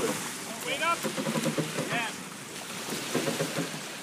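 Wind on the microphone over the wash of water around a sailboat, with short calling voices from the crews about a second in and again about two seconds in.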